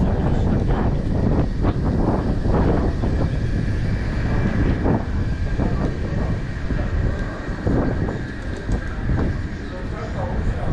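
Wind buffeting the microphone in a constant, uneven low rumble, with people's voices talking nearby, mostly in the first half.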